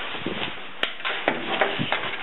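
Rustling and crinkling of a vinyl shower curtain being picked up and handled, with a single sharp click a little under halfway through.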